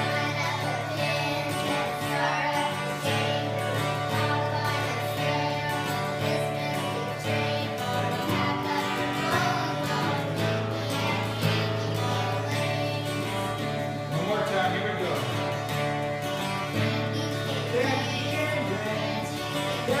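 Acoustic guitar accompaniment with three girls singing together.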